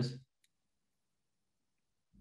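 The end of a man's spoken word, then near silence broken by one faint click about half a second in, from a stylus tapping a tablet screen while writing.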